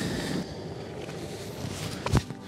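Steady outdoor noise of wind on the microphone and water beside a harbour dock.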